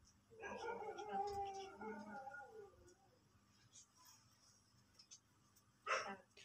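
A faint, high, wavering whine from a voice, lasting about two seconds from about half a second in.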